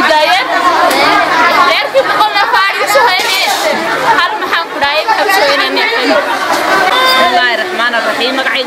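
Speech: several voices talking over one another, a woman's voice among them.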